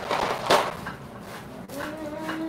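A single light knock about half a second in, from something handled on a kitchen counter, then a faint steady tone near the end.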